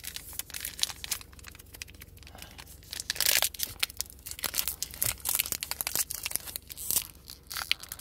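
Foil wrapper of a Pokémon booster pack crinkling and crackling in the fingers as they pick at its sealed top edge, trying to tear it open, with a louder rustle about three seconds in.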